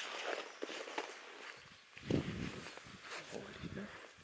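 People talking in low voices from about two seconds in, after a few short clicks and rustles in the first second or so.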